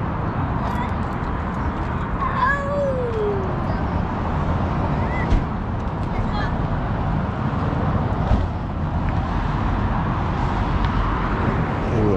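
Car-meet crowd ambience: a low steady rumble with distant voices. About two and a half seconds in comes one brief, falling, drawn-out call.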